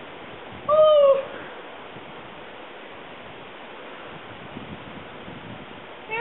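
A person's short, high-pitched vocal cry, about half a second long, about a second in, over a steady background hiss.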